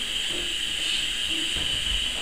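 A steady high hiss, with faint muffled voices underneath and a low rumble near the end.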